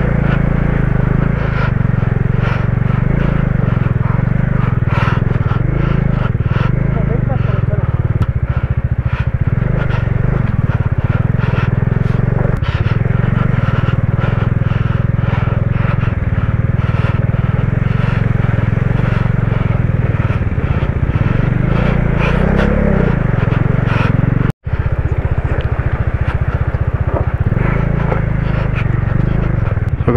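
Motorcycle engine running steadily as the bike rides through a shallow, rocky river crossing, a loud constant rumble with no words over it. Near the end the sound drops out for an instant and then picks up again.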